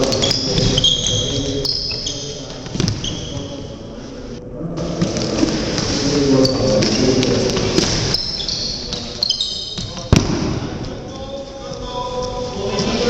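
Sports-hall activity on a wooden court: shoes squeaking in short high squeals, a ball bouncing, and players' voices echoing in the hall, with one sharp thump about ten seconds in.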